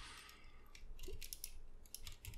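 Faint, scattered clicks and scrapes of the hard plastic parts of a Transformers Masterpiece MP-44 Convoy figure being pressed and shifted as a leg panel is collapsed in and worked into alignment against slight resistance.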